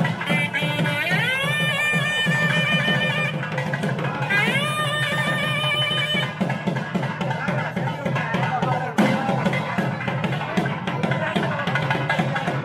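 South Indian temple music: a nadaswaram (double-reed pipe) plays two long notes that slide up and hold, over a steady rhythm on thavil drums that carries on through.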